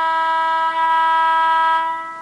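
Sampled diesel locomotive air horn from a Broadway Limited Paragon 2 sound decoder in an N scale Alco PA, sounding a steady multi-note chord. It fades out near the end as a separate horn ending, triggered by releasing the horn button and pressing it again.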